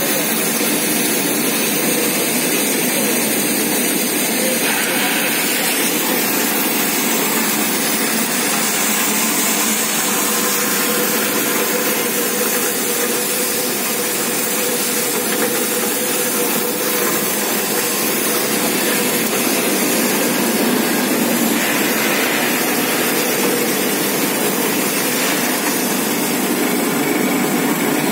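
Keshar Extrusion CPVC pulveriser running steadily while grinding CPVC chips, together with its blower and vibrating screen: a loud, even, unbroken industrial din.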